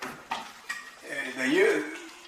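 Wooden stretcher strips knocking and clicking against each other as they are handled and fitted together at a corner, with a sharp knock at the start and a few lighter clicks after it. A man's drawn-out wordless voice follows in the second half.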